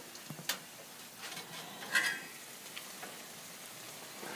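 Faint sizzle of potatoes frying in the bottom of a covered stainless steel pot, with a sharp click about half a second in and a ringing metal clink about two seconds in as the lid is lifted. The sizzle is the sign that the water has cooked off and the potatoes have started to fry, the cue that the steamed strudel are done.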